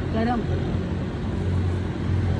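Steady street traffic noise with a continuous low engine hum underneath.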